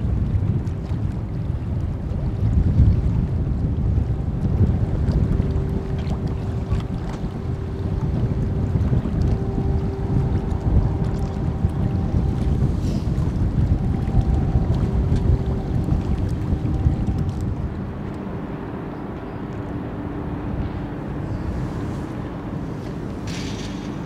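Wind buffeting the microphone over the low drone of a ro-ro car carrier and its tugboats on the water, with a faint steady hum. The rumble eases a little toward the end.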